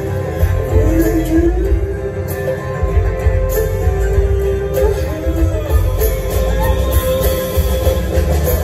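Live acoustic guitars playing a folk song through a venue's PA, recorded from the audience, with a heavy, boomy low end.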